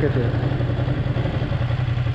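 Ducati Panigale V2's 955 cc Superquadro V-twin idling steadily with the bike stopped, heard from the rider's seat.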